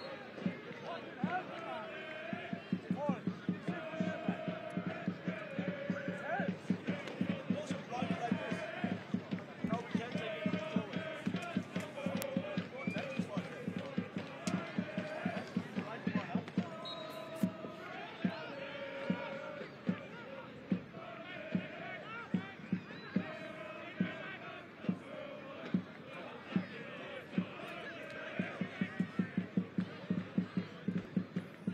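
Crowd of supporters in the stands chanting in sung phrases over a steady beat of drum hits. The drumbeats come faster near the end.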